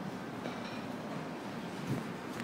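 Steady city street background rumble, with a brief bump from the handheld camera being moved near the end.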